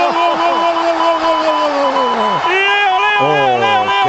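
Spanish radio commentator's long, drawn-out goal cry of 'gol', held on one pitch and then falling away a little over two seconds in. It is the call of Messi's goal, and a second held cry follows at once.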